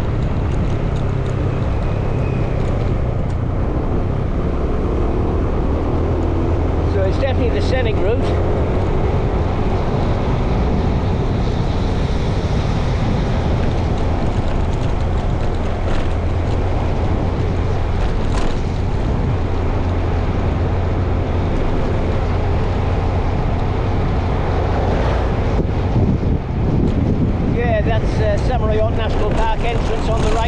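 Steady running noise of a moving road vehicle, with wind buffeting the microphone.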